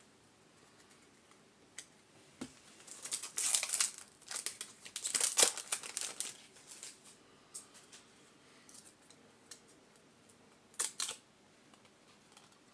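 A 1993-94 SkyBox Premium basketball card pack's wrapper being torn open and crinkled, in a few bursts of tearing and rustling from about three to seven seconds in, with a short rustle again near the end.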